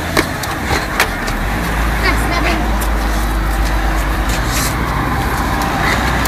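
A steady low rumble sets in about a second and a half in, under faint voices; a few sharp clicks come in the first second.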